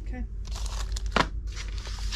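Packaged items being handled on a wooden workbench: a light plastic crinkling, with one sharp tap just after a second in.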